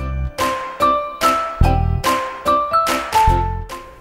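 Children's background music: a melody of ringing, bell-like struck notes, about two a second, over a few low bass notes.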